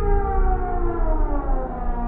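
Brachiosaurus call: one long pitched call sliding down in pitch and fading about three-quarters of the way through, over a low rumble.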